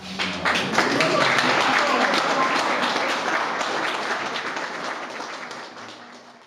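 Audience applauding, the clapping coming in about half a second in, quickly reaching full strength and then slowly fading away.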